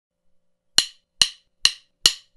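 Three sharp percussion clicks, evenly spaced a little under half a second apart, beginning almost a second in: a steady count-in that leads into the music.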